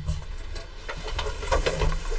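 Bolts of cotton quilting fabric being handled and unrolled on a table: soft rustling and light bumps, busier near the end, over a low steady hum.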